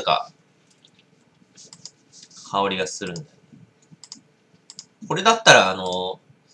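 A voice sounds twice, briefly, with no clear words, and faint small clicks are scattered through the quieter stretches between.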